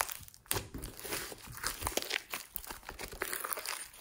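Thick, fluffy slime studded with small foam beads being squeezed, pressed and stretched by hand, giving a dense, irregular run of small crackles and pops.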